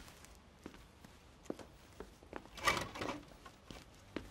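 A few faint, scattered knocks and a short rustle a little before the three-second mark, over quiet room tone.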